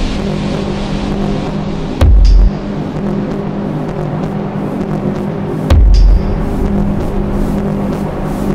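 Techno track from a DJ mix: a steady droning tone with two loud, deep bass hits, each about half a second long and starting with a sharp click, about two seconds and under six seconds in.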